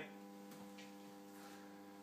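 Faint, steady electrical mains hum: a stack of even, unchanging tones.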